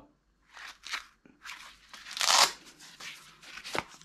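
Handling noise as a Gerber multi-tool is taken out of its belt pouch: a run of rustling and scuffing sounds, the loudest a short harsh scrape about two seconds in, with a small click near the end.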